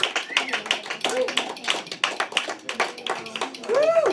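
Scattered handclaps from a small audience, many quick irregular claps, with people's voices talking over them.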